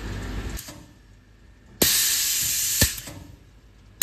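Pneumatic dosing gun for liquid PVC firing one metered shot: a sudden burst of compressed-air hiss lasting about a second, starting near the middle and cut off with a sharp click.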